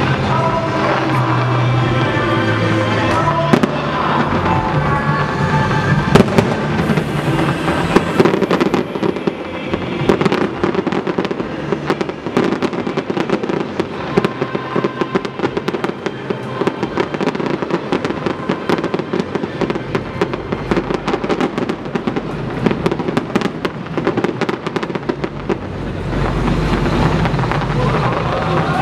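Distant fireworks show: rapid bangs and crackling from aerial shells, densest and most continuous through the middle of the stretch.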